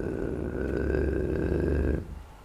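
A man's drawn-out hesitation sound: one steady held vowel, unbroken for about two seconds, made in the middle of a sentence while he reaches for the next word. It cuts off suddenly at the end.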